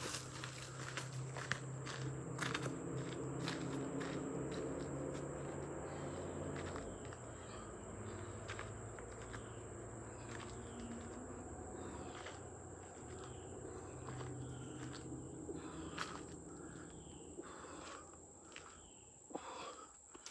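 Soft footsteps on a dirt trail as a man steps through lunges, over a steady high insect buzz and a bird chirping again and again. A low hum lies underneath for most of the stretch and fades out near the end.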